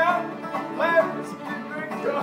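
Live bluegrass band playing an instrumental passage: fiddle carrying the melody with sliding notes over strummed acoustic guitar and a picked banjo.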